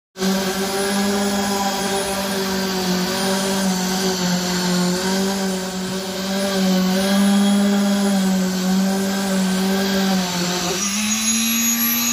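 Concrete poker vibrator with a flexible shaft, running in a freshly poured concrete column as it is compacted. It makes a steady, high mechanical hum that wavers slightly in pitch. Near the end the hum dips briefly and then settles a little higher.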